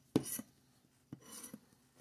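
A scratcher tool scraping the scratch-off coating of a lottery ticket: a short scrape just after the start, then a longer, fainter scrape past the middle.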